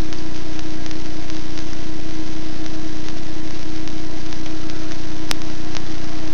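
Steady loud hum and hiss with a constant mid-low tone. A single sharp click sounds about five seconds in.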